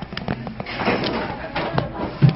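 Indistinct voices in a busy restaurant, with a few short knocks and clatters.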